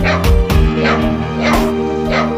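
A dog barking repeatedly over background music with a steady beat.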